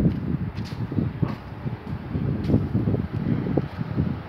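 Gusts of wind buffeting the microphone, loud and uneven, over the low rumble of an Amtrak Acela Express train still some way off and approaching slowly.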